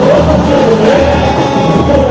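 Samba-enredo from a samba school's bateria with the song sung over the sound system: a steady deep surdo drum beat pulsing about every half second under a sung melody.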